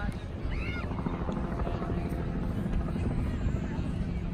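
Steady low drone of an aircraft overhead, building about a second in, over distant voices of people on the lawn.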